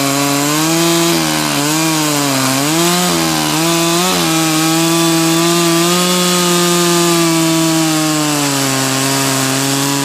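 Stihl two-stroke chainsaw running under load as it cuts through a large log. The engine note wavers up and down for the first few seconds as the chain bites, then holds steady through the cut.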